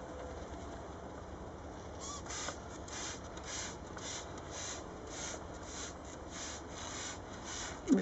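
Hand pump sprayer misting lactic acid onto a comb covered with honeybees, as a varroa treatment. Short hissing squirts about twice a second, starting about two seconds in.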